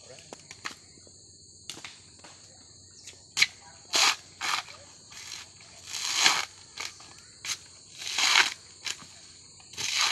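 Coconut husk being torn off on an upright metal husking spike: a series of rasping, tearing crunches of fibre, each under a second, with the loudest about six and eight seconds in.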